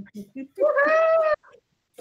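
A single high-pitched, drawn-out vocal cry of just under a second, holding a steady pitch after a quick rise, preceded by a few short sounds.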